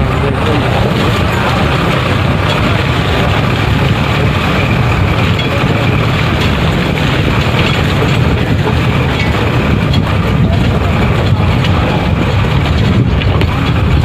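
Steady engine and road noise of a moving bus heard from a passenger seat at an open window, strongest in the low end, with no sudden events.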